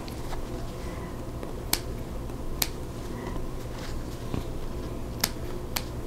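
Small scissors snipping the threads between chain-pieced fabric squares: about four sharp snips spread over a few seconds, over a low steady hum.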